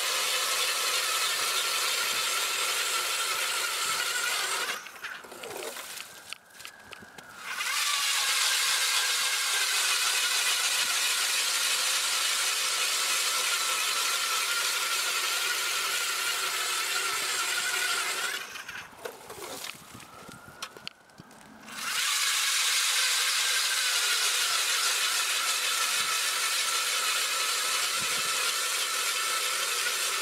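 ION 40V lithium-battery electric ice auger boring through about 18 inches of lake ice: a steady electric motor whine over the scrape of the blade in the ice. It stops twice for two to three seconds, about five seconds in and again near nineteen seconds, then starts up again.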